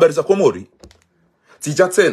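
A man's voice in two short bursts of speech, with a few faint clicks in the pause between them.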